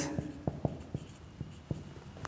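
Marker pen writing on a whiteboard: a string of short, sharp taps and strokes as letters are formed.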